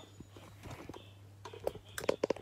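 Faint handling noise of a phone being adjusted in a ring-light stand, with a few light clicks and knocks growing sharper near the end, over a low steady hum.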